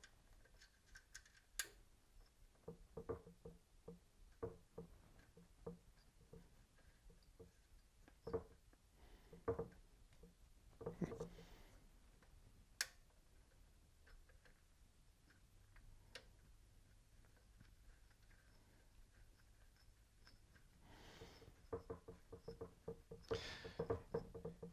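Near silence broken by scattered faint clicks, taps and rustles of hands working metal fittings: a copper air-line fitting on a high-pressure compressor being threaded in and tightened by finger.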